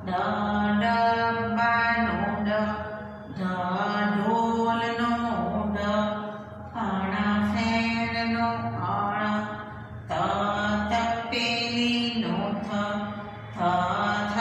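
A woman reciting Gujarati letters aloud in a drawn-out sing-song chant, in phrases of about three seconds with brief breaks between them.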